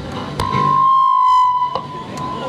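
PA microphone feedback: a steady high howl that starts after a click, swells, then cuts back sharply with a second click and lingers faintly. The microphone is held right at an acoustic guitar's body, which sets up the feedback loop.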